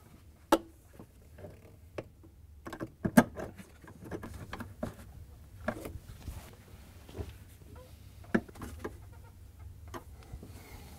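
Scattered faint clicks and knocks of a hand tool and plastic parts as the ice maker's quarter-inch mounting screws are driven back in with a nut driver. The loudest is a sharp knock about three seconds in.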